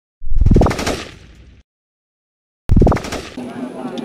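A sudden loud burst whose pitch climbs quickly and then dies away, heard twice with a second of dead silence between them; the second runs on into the murmur and voices of people outdoors.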